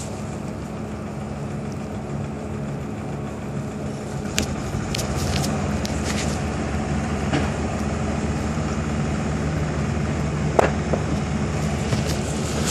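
Concrete truck's engine running steadily, a little louder from about five seconds in, with a few sharp clicks over it.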